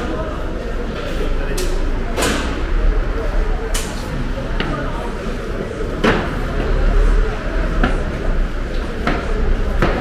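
Market hall ambience: background voices of vendors and shoppers, with scattered sharp knocks and clatters and a low steady rumble underneath.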